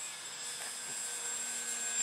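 Motor and propeller of an 800mm radio-controlled Boeing P-26A Peashooter model in flight: a steady high whine with a fainter low hum, getting a little louder near the end.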